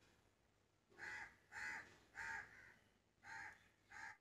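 A bird calling faintly: three short calls a little over half a second apart, then two more after a pause, the last near the end.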